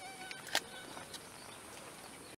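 Faint outdoor ambience of insects: a steady, high-pitched insect hiss, with one sharp click about half a second in and a few faint short chirps.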